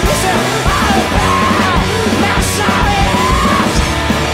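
Loud alternative rock played by a four-piece band, with electric guitars, bass and drums, and a shouted male lead vocal.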